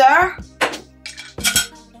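Kitchen utensils handled on a plate: two sharp clinks, about a second apart, as a small plastic blender cup is set down and a metal hand grater is lifted off beside a mesh strainer.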